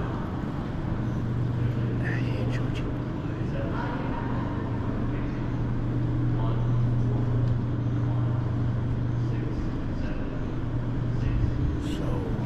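Indoor room ambience: a steady low hum with faint, indistinct voices now and then.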